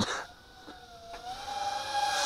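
Eachine Racer 180 tilt-rotor drone's brushless motors and propellers whining in flight: a steady tone that steps up slightly in pitch about a second in, with a hiss that grows louder toward the end.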